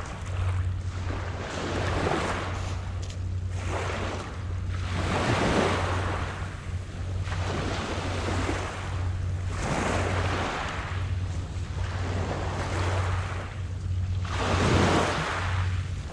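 Small waves washing onto a gravel beach, rising and falling in swells every few seconds, over a steady low wind rumble on the microphone.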